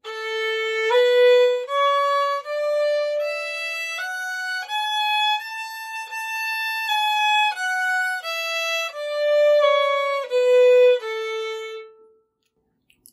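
Violin playing an A scale, one octave up and back down, in shuffle bowing: a repeating pattern of one long bow and two short bows, with two notes slurred into each long bow.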